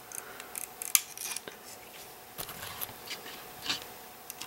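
Small flathead screwdriver prying at the plastic coupler pocket of a model railroad freight car: faint scrapes and light plastic clicks, with one sharper click about a second in.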